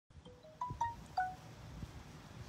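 A chime sounding five short, clear, ringing notes that climb and then fall in pitch, with a low rumble of wind and handling noise underneath.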